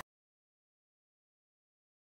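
Silence: the sound track is completely blank, a dead gap with no sound at all.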